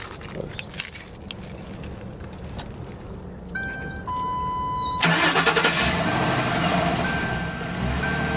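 2007 Mercury Grand Marquis's 4.6-litre V8 being started by its aftermarket remote starter. Keys jingle briefly at first. A few electronic beeps follow, one of them held for about a second, and then about five seconds in the engine cranks, catches and settles into a steady idle.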